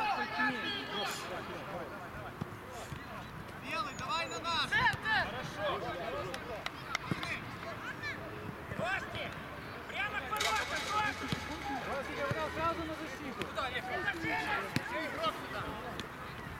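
Footballers' voices calling and shouting to one another during play, scattered short shouts through the whole stretch, with a few short knocks in between.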